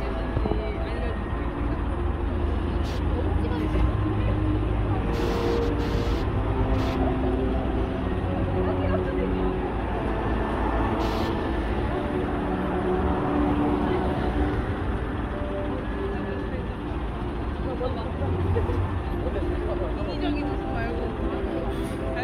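City street ambience: a steady rumble of road traffic with indistinct voices of people nearby.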